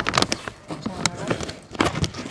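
Plastic sack of compost crinkling and rustling in quick, irregular crackles as it is handled and the compost tips out onto the heap.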